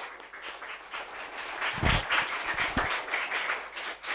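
An audience clapping by hand in a hall, a scattered applause that swells and then fades near the end.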